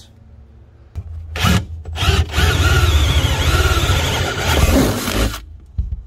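Cordless drill boring a pilot hole through the cab's sheet-metal body panel for a bolt hole, running for about three seconds and then stopping. A couple of short knocks come just before the drilling starts.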